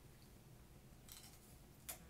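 Near silence, then a faint, short crunch near the end as a piece of raw red bell pepper coated in maple syrup is bitten.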